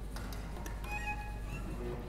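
Chamber ensemble of strings and flute playing sparse contemporary music: a few short, high held notes and scattered small clicks over a low steady hum.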